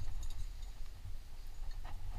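Low, steady rumble on a climber's first-person camera microphone, with a few faint clicks in the first half-second and one more near the end.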